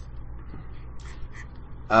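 A short lull in speech filled with a steady low hum and faint breath sounds. At the very end a speaker starts a drawn-out "um".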